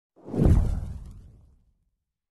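A single whoosh sound effect for an animated logo intro. It swells quickly, peaks about half a second in, then fades away over about a second.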